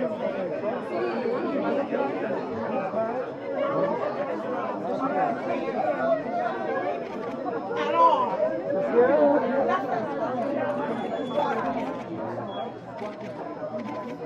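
Indistinct chatter of many people talking at once, a steady background of overlapping voices with no single clear speaker.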